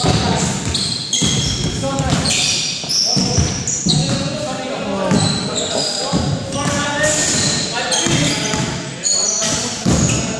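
Basketball bouncing on a hardwood gym floor during a pickup game, with short high squeaks of sneakers on the floor and players' voices, all echoing in a large hall.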